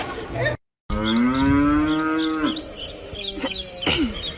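A cow moos in one long call lasting about a second and a half, starting just after a second in and rising slightly in pitch before holding steady. A shorter, fainter call follows near the end.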